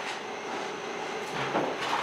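Steady mechanical hum of a universal testing machine running as it slowly pulls a steel reinforcing bar in tension, with a brief louder sound about one and a half seconds in.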